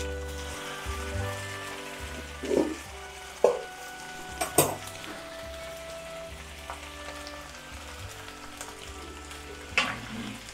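Sizzling from a pan of masala-coated tandoori chicken with a live charcoal lump set in it to smoke the meat; the sizzle dies down over the first few seconds. A few sharp clinks of metal tongs against the pan come in the middle.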